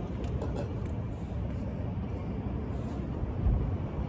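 Steady low outdoor rumble, with one brief louder low bump about three and a half seconds in.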